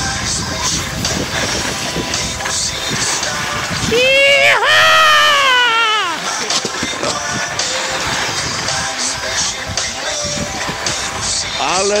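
Steady scraping hiss of edges sliding fast over packed snow on a downhill run, with short scrapes recurring. About four seconds in, a voice gives one long wavering call lasting about two seconds that rises and then falls.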